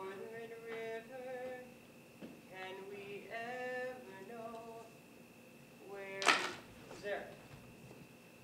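A woman singing a slow, unaccompanied melody in held notes. About six seconds in, a short vocal sound ends in a loud hissing burst, and a smaller one follows about a second later.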